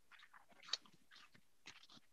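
Near silence with faint, scattered clicks and rustles of something being handled, one a little louder just under a second in.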